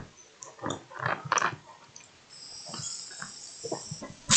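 A man drinking from a black flask: a sharp click, several short mouth and swallowing sounds, then a steady high hiss through the second half.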